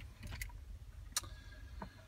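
A few faint, short clicks, the sharpest about a second in, over a low steady hum.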